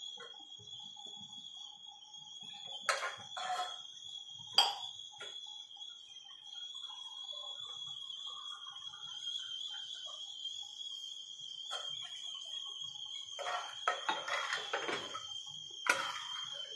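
A steel spoon knocks and clatters against the inside of a black pressure cooker as rice and dal are stirred, with a few sharp knocks a few seconds in and a busier run of clattering near the end. A steady high-pitched whine runs underneath throughout.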